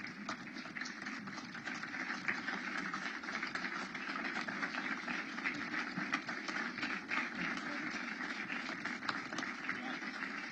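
Large audience applauding steadily at the end of a speech: many hands clapping at once in a dense, even patter.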